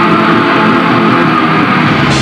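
Black metal band playing live, loud and dense, carried by distorted electric guitars.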